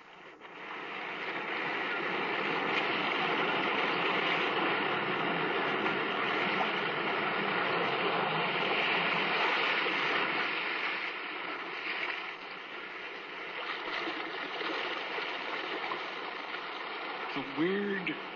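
Radio sound effect of sea surf: a steady rushing wash of waves that swells in over the first two seconds and eases a little about twelve seconds in. Near the end a few brief gliding tones sound over it.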